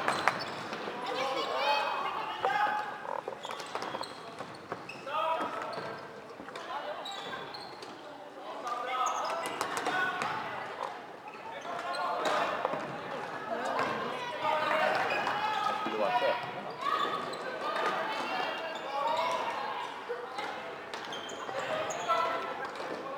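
Sounds of an indoor floorball game: players calling and shouting to each other across the court, with sharp clicks and knocks of sticks and ball on the court.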